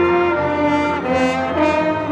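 Student orchestra playing in rehearsal, with strings and brass sounding together. The melody moves in held notes that change every third to half second.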